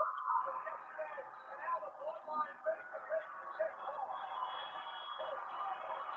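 Faint, thin-sounding voices from a broadcast playing through a speaker and picked up by the microphone.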